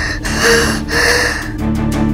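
A woman gasping for breath in distress, two heavy breaths about half a second apart, over background music that carries on with a light steady beat.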